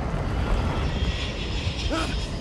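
Steady rumble of a large propeller cargo plane's engines mixed with rushing air, as heard by a man free-falling below it. A brief vocal cry comes near the end.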